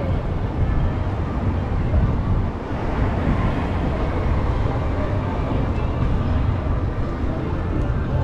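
Downtown street traffic: cars driving through an intersection at low speed, a steady wash of engine and tyre noise.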